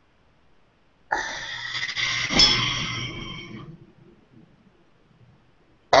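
A person's long, heavy breath starting about a second in, lasting about two and a half seconds and fading out.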